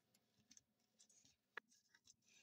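Near silence, with faint soft rustling and clicks of a wooden spoon stirring marshmallows and coconut in a glass bowl, and one sharper click about one and a half seconds in.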